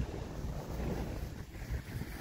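Low, fluttering rumble of a slight breeze on the microphone, over the soft wash of the rising sea against the slipway.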